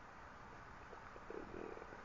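Quiet room tone in a pause between speech, with a few faint, short low sounds from about a second in.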